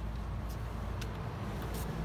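Steady low rumble of an idling vehicle engine, with a couple of faint ticks.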